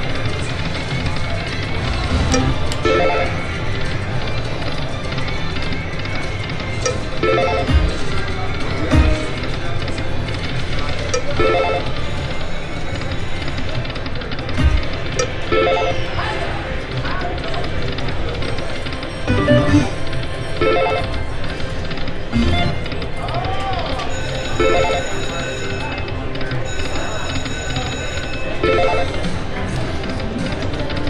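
Aristocrat Dragon Link slot machine (Peace and Long Life game) on repeated spins: its electronic reel-spin and reel-stop tones and short jingles recur every two to three seconds, with brighter chiming near the end. Casino background noise and chatter run underneath.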